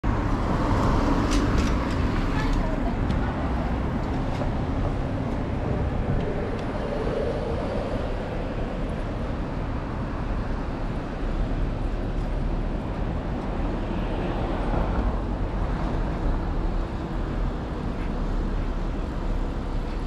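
Steady road traffic noise: cars and vans passing on a city street, with a continuous low rumble.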